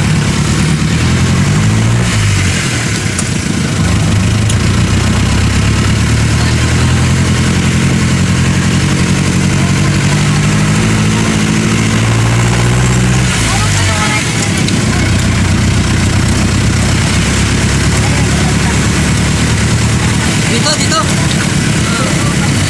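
A vehicle's engine running as it drives, heard from inside the vehicle, its pitch dropping about two seconds in and again around thirteen seconds as it slows, over a steady hiss of road noise on wet pavement.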